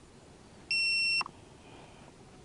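A single electronic beep from the Hubsan Zino drone's equipment as it is readied for flight: one steady high tone lasting about half a second, starting and stopping abruptly about two-thirds of a second in.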